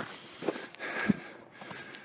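Faint, scattered scuffs and rustles from a person on foot handling a phone camera, with a brief low breath-like sound about a second in.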